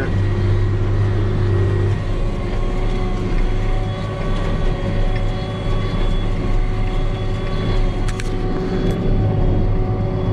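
Tractor engine running steadily under load, heard inside the cab while pulling a hay baler, with a steady low drone and a few held tones. Two short clicks sound near the end.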